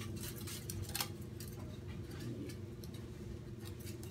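Aluminum foil being handled and wrapped around a thin skewer: scattered light crackles and clicks, one sharper click about a second in, over a low steady hum.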